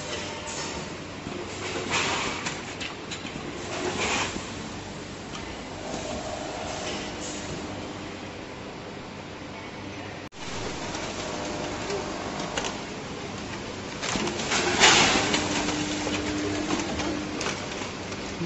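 Dession DS-420AZ vertical form-fill-seal packing machine with linear scale weighers running: a steady machine hum broken by short rushes of noise as it works through its bagging cycle, the loudest about fifteen seconds in.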